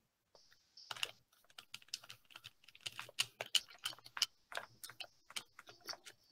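Typing on a computer keyboard: a faint, irregular run of key clicks, several a second, starting about a second in.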